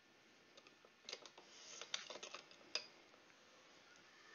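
Faint computer keyboard typing: a quick run of key clicks starting about a second in and stopping just before three seconds, with two louder clicks among them.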